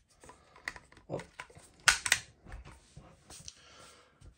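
Rotary magazine of a Winchester Xpert .22 LR bolt-action rifle being pushed back into the magazine well. A few light clicks and scrapes are followed by two sharp clicks about two seconds in as it seats.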